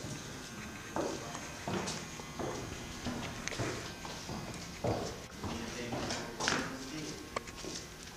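Footsteps on wooden stairs and boards, a series of irregular knocking steps roughly one a second.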